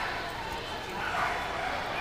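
A dog barking, over people talking.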